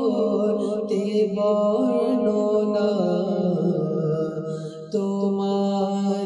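A man's voice singing a naat, a devotional Islamic hymn, without instruments, in long held notes that slide from pitch to pitch. About five seconds in the voice dips and breaks, then starts a new held note.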